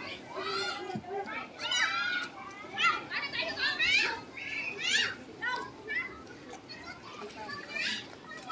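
Children's high-pitched voices calling and chattering over one another, mixed with the talk of a crowd of adults.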